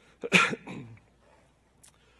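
A man coughing: one sharp, loud cough about a quarter second in, with a short voiced tail and a smaller second cough after it.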